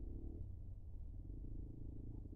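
A low, steady rumbling hum with no pauses or changes.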